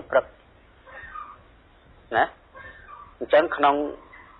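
A monk's voice giving a dharma talk: short spoken phrases with pauses between them.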